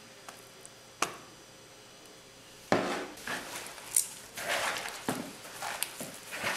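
Bare hands mixing and squeezing a crumbly tapioca-starch, milk and egg dough in a plastic bowl: an irregular run of squishing and rubbing noises that starts almost three seconds in. A single sharp knock comes about a second in.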